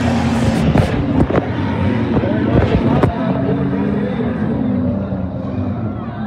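Several figure-8 race cars' engines running and revving on a dirt track, their pitch rising and falling, with a few sharp knocks.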